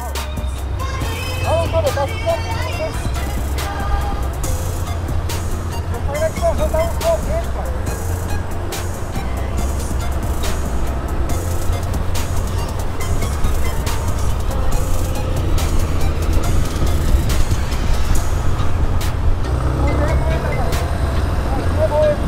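Motorcycle engine running while riding, with a steady low wind rumble on the microphone. Short voice-like sounds come about two and seven seconds in.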